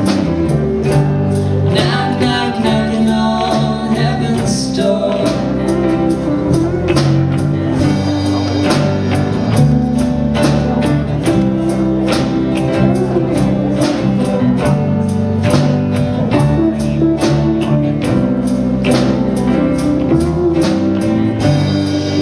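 A rock band playing live: electric guitars, electric bass and a drum kit keeping a steady beat.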